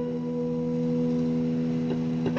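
Electric guitar played through a Clari(not)-clone fuzz pedal: one held note or chord sustaining steadily as a smooth, almost pure tone, quieter than the playing around it.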